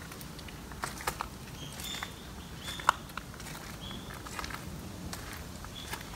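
Footsteps on gravel, scattered light crunches and ticks, with a few short high chirps around two and four seconds in.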